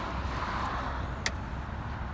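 Buick Grand National's turbocharged 3.8 V6 idling steadily with the hood open, with one sharp click a little past halfway through.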